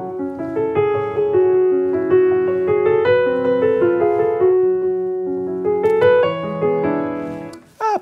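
Grand piano playing a slow, quiet passage of sustained, pedalled notes over a held F-sharp pedal tone in the bass. The phrase fades away near the end.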